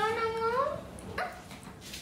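A young boy's high-pitched, drawn-out whine that rises at the end, followed about a second in by a short second cry.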